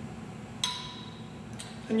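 Glassware clinks once with a short, bright ring, then gives a fainter tap about a second later.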